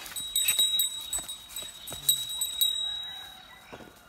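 A bell on a Hallikar bull's neck jingling in several quick strikes as the animal is handled at its head. Each strike leaves a steady high ring, and the ringing fades out near the end.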